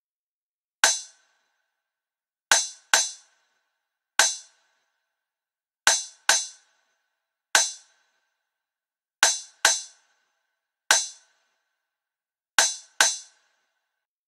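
A trap drum-kit one-shot percussion sample played in a sparse loop: a sharp, bright hit with a short metallic ring, sounding as a single hit, then a quick pair, about every 1.7 seconds (twelve hits in all).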